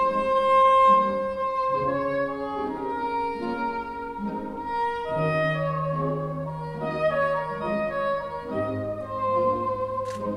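Solo saxophone playing a slow, sustained melody over a string orchestra with jazz rhythm section, the bass holding long notes that change about halfway through and again near the end.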